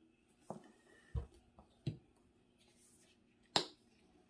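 Plastic paint bottles handled on a tabletop: a few light knocks and taps in the first two seconds, one with a low thud, then a single sharp click of a flip-top cap about three and a half seconds in, the loudest sound.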